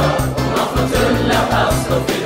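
Music with a steady beat and singing voices.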